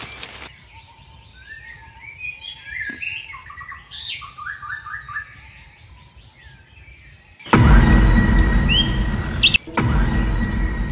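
Forest birds chirping in short scattered calls over a steady high insect drone. About seven and a half seconds in, a sudden loud, low-heavy noise cuts in and covers them, briefly dropping out near the end.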